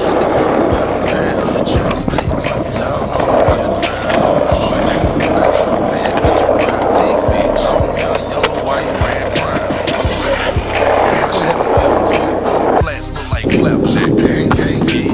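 Skateboard wheels rolling on asphalt, with the sharp clacks of the board popping and landing on ollies, mixed with background music with a steady beat.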